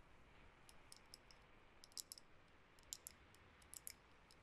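Long fingernails tapping lightly on a bamboo-muzzle prop: faint, irregular clicks in small clusters.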